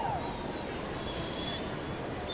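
Stadium crowd noise, with a high steady whistle blast about a second in that lasts around half a second.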